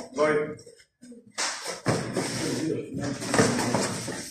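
Indistinct shouting and talking voices echoing in a gym hall, with a brief lull about a second in.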